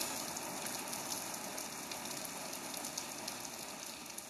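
Faint crackling hiss left after the electronic track ends, slowly fading away.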